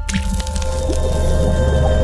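Animated logo sting: a liquid drip and splat sound effect over sustained music with a heavy, deep bass drone and several held tones.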